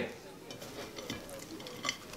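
Faint handling noises as a burger is picked up off a plate: a few light clicks and knocks against the plate, the sharpest just before the end.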